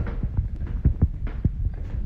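Phone microphone handling noise: irregular low thumps, a few each second, over a low rumble as the phone moves and rubs against clothing.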